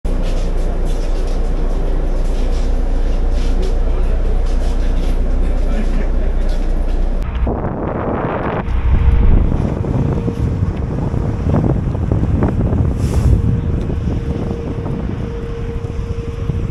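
Steady low rumble of an airport apron bus's engine, heard from inside the bus. After a sudden cut about seven seconds in, wind buffets the microphone outdoors, with a steady whine in the background.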